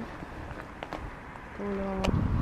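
A few faint footsteps on frost-covered tarmac against a quiet outdoor background. A person's voice comes in near the end.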